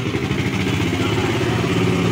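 Vehicle engine idling steadily: an even, low hum.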